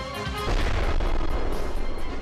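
A laser-guided missile exploding on impact with the ground: a sudden loud blast about half a second in, then a rumble lasting over a second, with background music underneath.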